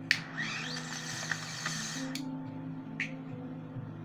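Glass bong bubbling as smoke is drawn through the water for about two seconds, starting with a sharp click and ending just past the two-second mark, followed by another click and a short burst about a second later. Background music plays underneath.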